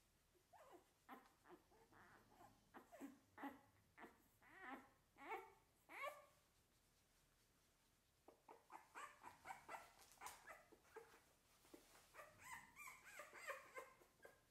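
Three-week-old American Bully puppy whimpering softly in a run of short, high squeaks as she is held and handled. The squeaks stop for about two seconds past the middle, then start again closer together.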